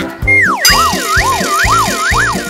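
Cartoon wobble sound effect: a whistle-like tone drops and then wobbles up and down about twice a second, with a hiss-like shimmer above it. It plays over bouncy children's background music with a steady beat.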